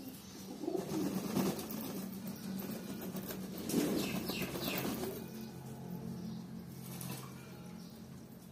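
Domestic pigeons cooing, with a burst of wing flapping about four seconds in as a freshly bathed pigeon beats its wings on the ground.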